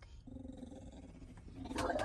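A dog shut in a plastic travel crate giving one low, drawn-out growl about a second long.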